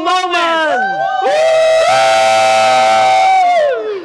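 A small group of people cheering together in one long held shout that starts about a second in and falls away just before the end.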